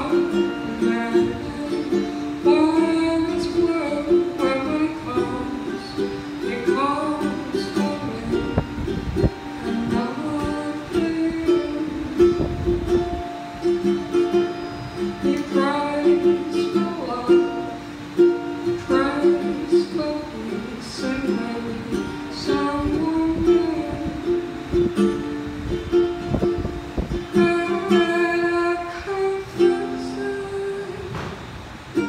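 Ukulele strummed and plucked in a steady rhythm while a woman sings over it in phrases of a few seconds each.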